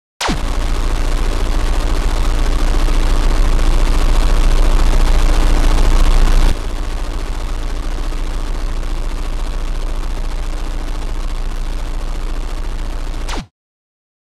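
Old television static: a loud hiss with dense, rapid crackling and a steady hum. It starts suddenly, drops in level about halfway through, and cuts off abruptly just before the end.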